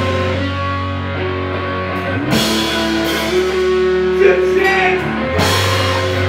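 Live rock band playing loud: electric guitar holding sustained chords over drums, with cymbal crashes about two and a half seconds in and again near the end.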